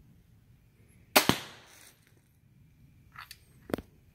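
A scoped crossbow firing: one sharp, loud snap about a second in, dying away over about half a second. Two fainter sharp knocks follow near the end.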